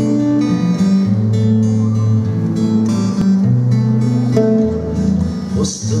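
Two acoustic guitars playing a song's instrumental introduction: plucked and strummed chords over a moving bass line.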